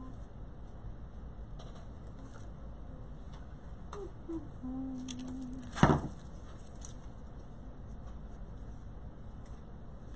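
Ribbon and craft supplies being handled and cut on a worktable: faint scattered clicks and rustles, with one sharp knock about six seconds in, the loudest sound.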